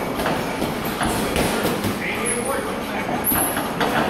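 Boxing sparring in a ring: feet shuffling and squeaking on the canvas and scattered punches thudding, over background voices.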